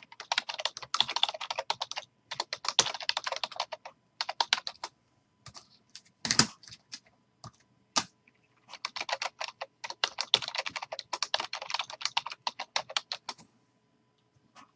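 Typing on a computer keyboard in quick runs of keystrokes, with a gap of a few seconds midway broken only by a few single key presses and one louder knock.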